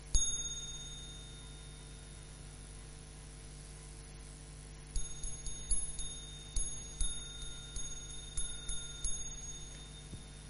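A small meditation bell struck once and left ringing with a clear high tone. From about five seconds in it is struck again in a quick, uneven run of many strokes. The bell marks the close of the meditation sitting.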